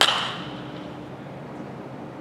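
A baseball bat hitting a pitched ball during batting practice: one sharp crack with a short ringing tail that fades within about half a second.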